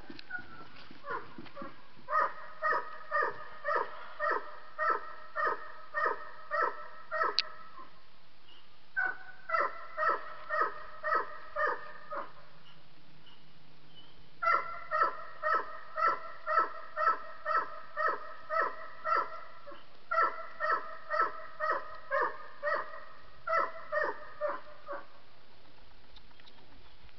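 A dog barking over and over, about two barks a second, in several long runs broken by short pauses.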